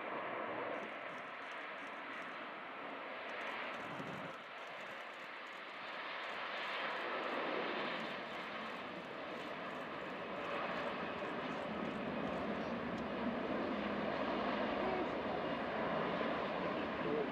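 Jet engines of a Boeing 777 airliner rolling along the runway: a steady, noisy roar that dips briefly and then grows gradually louder.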